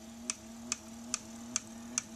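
Slow-running electric pulse motor ticking evenly about twice a second, one click per revolution of its rotor at around 140 RPM, over a steady low hum.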